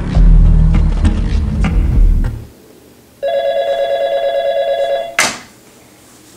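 Heavy, bass-laden music that stops about two and a half seconds in. After a short pause a phone rings with a fast warbling trill for about two seconds, ending in one sharp hit.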